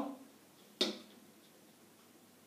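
A single sharp click of a flat piece touching a wall-mounted demonstration chessboard, a little under a second in, over quiet room tone.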